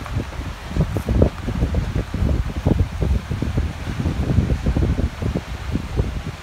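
Wind buffeting the microphone outdoors: an uneven low rumble that rises and falls in short gusts.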